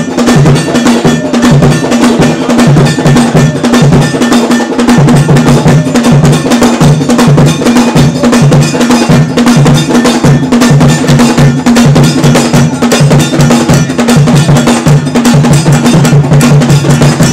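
Loud Ghanaian traditional percussion music: an iron bell ringing a steady repeating pattern over low drum beats pulsing in rhythm.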